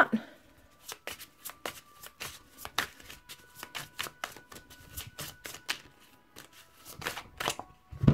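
A deck of tarot cards being shuffled and handled by hand: a run of quick, irregular soft clicks and slaps of card on card.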